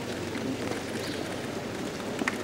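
Steady outdoor background noise of a gathering: a low, even murmur with a faint patter on top and no clear voices.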